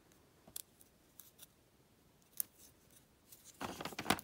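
Handling of craft materials on a cloth-covered tabletop: gem stickers and wooden lolly sticks. There are a few faint light clicks, then a short scratchy rustle near the end.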